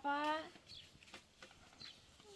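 A woman's voice trailing off at the end of a word in the first half second, followed by low background with a few faint clicks.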